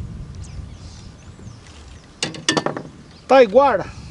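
A small fish splashing as it is pulled out of the lake on a pole line: a quick cluster of sharp splashes a little past halfway, over a low steady rumble.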